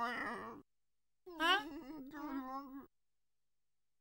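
A cartoon penguin character's nonsense-language voice: a short cry at the start, then a longer wavering, whining utterance of about a second and a half, with silence between and after.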